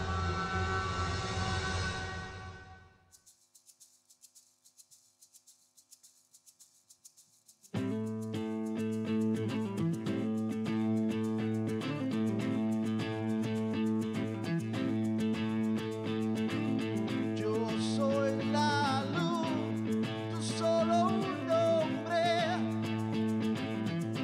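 A short intro jingle fades out in the first few seconds, followed by a gap of near silence. About eight seconds in, a live rock band starts up with a sustained electric guitar through a Marshall amp, bass and drums, and a wavering lead line comes in near the end.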